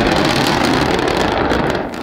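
SpaceX Starship prototype exploding on the pad, heard from a distance as a loud, steady wash of blast noise that eases off near the end, with wind on the microphone.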